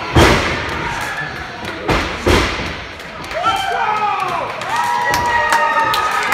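Wrestlers' bodies hitting the wrestling ring's mat: a loud thud just after the start and two more close together about two seconds in. They are followed by shouting voices with long held calls.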